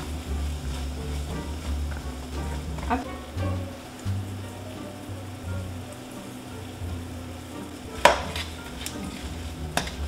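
Diced bell peppers and onions sizzling as they sauté in butter in a skillet, stirred with a spoon. Two sharp knocks sound near the end.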